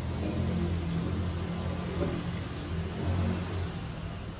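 A low engine hum, swelling twice and easing off, with a faint click about a second in.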